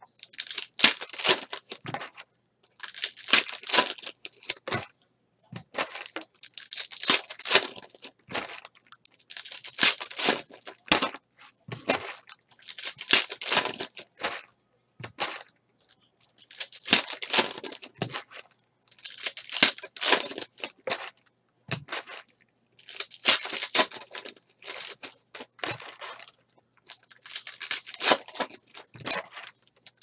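Foil trading-card pack wrappers being torn open and crinkled in hand, one pack after another. The crackling comes in repeated bursts of one to two seconds, about every three seconds.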